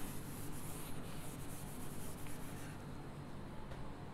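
Whiteboard eraser wiping a whiteboard: a faint, even scrubbing that fades out about two-thirds of the way through.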